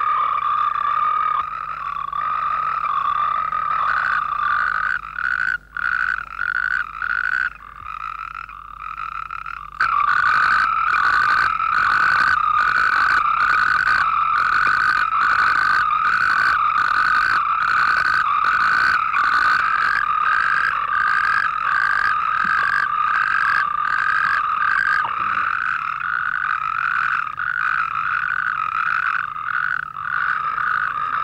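Chorus of natterjack toads calling in steady, high-pitched trills, with a nearby male's trill pulsing about twice a second over the rest. The calling drops out briefly several times in the first third, then comes back louder and steadier.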